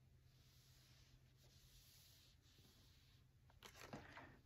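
Near silence: faint room tone, with a few soft rustles near the end.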